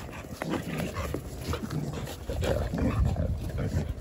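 Jindo dogs play-fighting, giving short, scattered vocal sounds as they wrestle.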